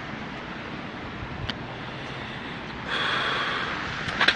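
Steady outdoor street noise, then about three seconds in a loud, hissing breath out close to the phone's microphone, lasting about a second.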